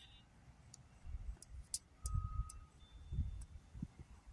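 Quiet outdoor background: low, uneven rumble of wind on the microphone, with a few faint clicks and a brief faint thin tone in the second half.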